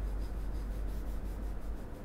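Steady low hum under a faint, irregular rubbing noise.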